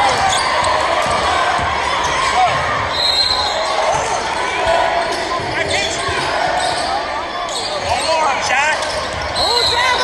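Basketball game sounds in a gym: a ball dribbling on the hardwood, sneakers squeaking on the court, and steady crowd chatter in a large hall. The squeaks come thickest near the end.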